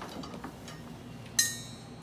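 A single bright metallic clink about one and a half seconds in, ringing briefly: a hand knocking against the metal calibration gas cylinder.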